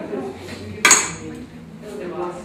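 Tableware clinking once, a little under a second in: a sharp knock with a short high ring that quickly dies away.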